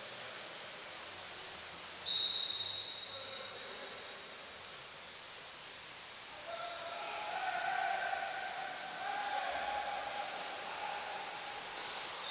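A referee's whistle: one high, steady blast about two seconds in that tails off over a couple of seconds. From about six seconds in, voices call out in long, held shouts across the pool.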